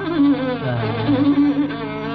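Carnatic classical concert music: a gliding, heavily ornamented melody line over a steady drone, with a dull tone lacking any treble.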